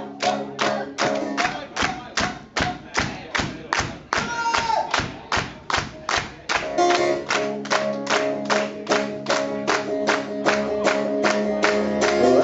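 Amplified acoustic guitar strummed hard in a steady driving rhythm, about two and a half percussive strokes a second. The chords ring out fuller from about halfway through, as a live instrumental intro before the vocals.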